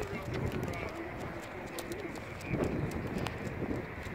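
Footsteps and a dog's nails clicking and scuffing on asphalt as a dog walks on a leash, with a louder scuff about two and a half seconds in.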